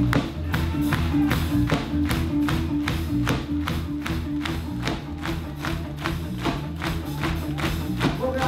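Live reggae band playing a steady bass line while a large crowd claps along in time, sharp regular claps about three a second.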